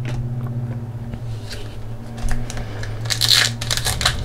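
Foil hockey-card pack wrapper being handled and torn open, with scattered crackles and a denser crinkling patch about three seconds in, over a steady low hum.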